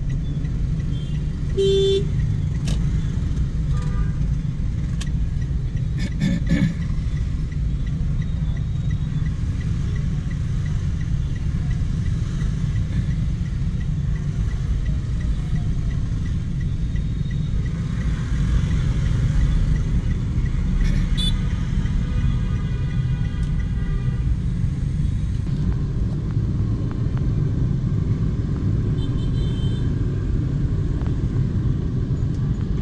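Dense rush-hour city traffic heard from inside a car: a steady low rumble of engines and tyres, with a short horn toot about two seconds in.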